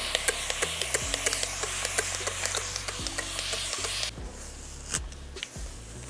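Background music with a steady bass line and beat. Over it, a continuous-mist spray bottle hisses steadily as it wets the wig's hair, stopping suddenly about four seconds in.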